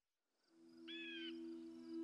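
Faint cartoon soundtrack fading in from silence: a soft, low held note starts about half a second in, and a short bird-like chirp sounds about a second in.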